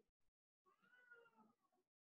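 Near silence, with one faint, short high call about a second in that rises and then falls in pitch.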